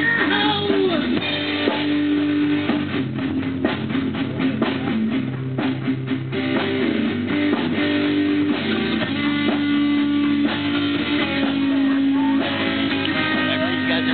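Live rock band playing an instrumental stretch with no vocals: electric guitar holding long notes over a drum kit. The sound is muddy and unclear, as recorded on a cheap point-and-shoot camera's microphone.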